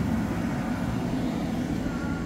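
Steady low hum of an electric air blower running continuously to keep an inflatable bounce house inflated.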